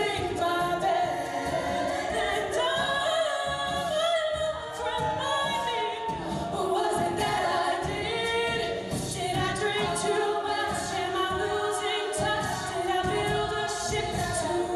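All-female a cappella group singing, a lead voice carried over the other singers' backing vocals.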